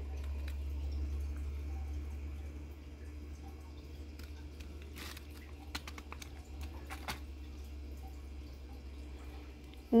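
A ladle pouring thick, chunky dip over chips on a plate, wet and soft, with a few faint clicks of the ladle about five and seven seconds in. A steady low hum runs underneath.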